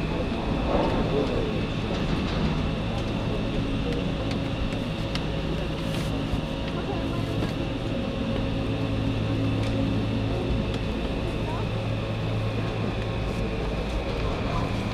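Steady running noise of a vehicle heard from inside, with a low hum under it and faint, indistinct voices.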